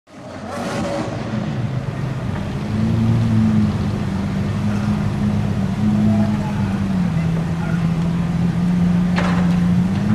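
Lamborghini Aventador's V12 engine running at low revs with a loud exhaust as the car creeps forward. The note rises and falls a little, then settles lower about seven seconds in. A brief sharp sound comes near the end.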